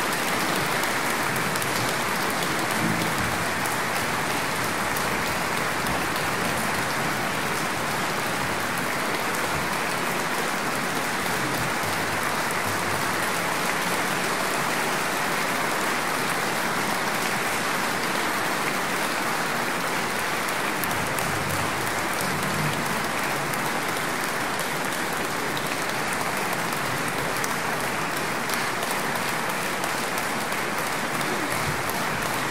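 Audience applauding steadily, the clapping even and unbroken.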